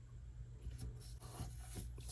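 Faint rubbing and light rustling of fingertips on skin and paper as paper gear cut-outs are handled, with a few soft taps.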